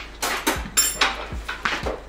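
Kitchen clatter: a string of short knocks and clinks of dishes and cups being handled on a counter, some with dull low thumps.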